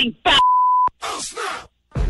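A single steady electronic beep, held for about half a second and cut off suddenly with a click.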